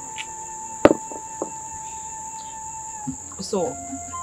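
Steady high-pitched insect chirring, with a soft background music note held underneath. A single sharp click about a second in.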